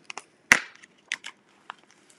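A resealable plastic bag of chunky glitter being pulled open by hand: one sharp crackle about half a second in, then a few fainter crinkles.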